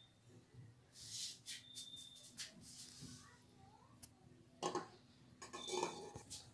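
Faint handling sounds of an aluminium cake tin being carried and set down inside a pressure cooker: a few short scrapes and knocks, with a sharp click about four seconds in.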